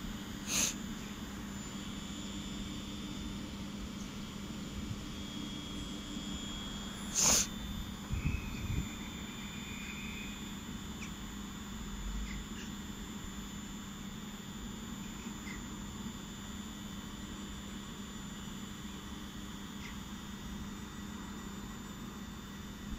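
Electric multiple unit train standing at a platform, giving a steady electrical hum with a faint high whine. A couple of sharp clicks and a few low thumps come about a third of the way in.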